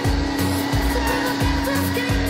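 Background pop music with a steady beat about every three-quarters of a second under a long held note.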